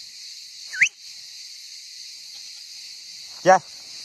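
Cicadas buzzing steadily in a high, even drone, with one short rising chirp a little under a second in.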